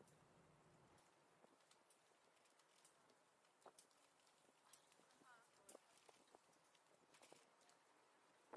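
Near silence with faint, irregular clicks and ticks, the quiet rattle of a bicycle being ridden.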